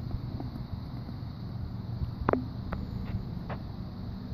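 Wind buffeting the microphone, giving a steady low rumble. Four faint, evenly spaced knocks come about half a second apart in the second half.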